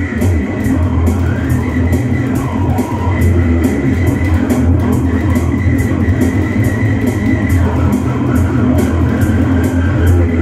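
Heavy rock music: an electric bass guitar played fingerstyle, with guitar and a steady drum beat behind it.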